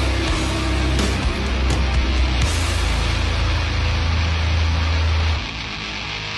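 Death-doom metal song playing, with distorted guitars over a heavy low end. About five seconds in the low end drops out and the music gets quieter.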